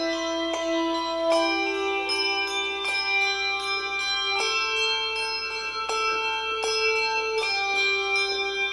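Handbell choir playing a slow piece: several handbells struck together in chords that ring on and overlap, with new notes entering about every second.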